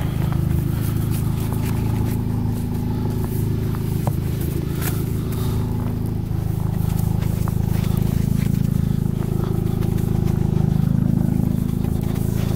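Tuned Audi A3 engine idling steadily while it warms up after a cold start. Light scrapes of a snow brush sweeping snow off the car's glass and roof come over the idle.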